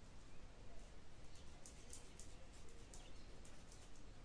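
Small school scissors chopping through a clip-in hair extension in a run of faint, quick, crisp snips, starting about a second and a half in. The scissors cut poorly, so they snip again and again at the same lock.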